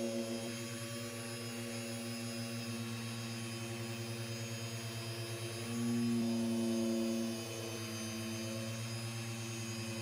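Long-throw dual-action polisher running steadily, working a microfiber cutting pad with cutting compound over the paint: a steady hum with a rapid flutter. It grows louder for about two seconds a little past the middle, then settles back.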